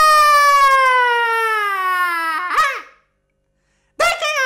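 A long, high-pitched shouted "Yaaaa": one held yell that slides steadily down in pitch, cracks briefly and cuts off about three seconds in.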